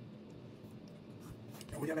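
Faint scraping of a table knife cutting food against a ceramic plate, with a few light clicks of cutlery; a man starts speaking near the end.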